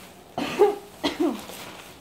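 A woman coughing twice, short and sharp, about half a second and a second in.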